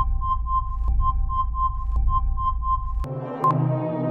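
Electronic quiz-game sound effects: a rapid pitched beeping, about four beeps a second over a low drone, as the answer is revealed. About three seconds in it switches abruptly to a synthesizer music bed with a short beep once a second, ticking off the countdown timer.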